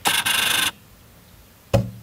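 Camera lens autofocus motor whirring in a rasping burst of about two-thirds of a second as the lens refocuses, followed by a short thump near the end.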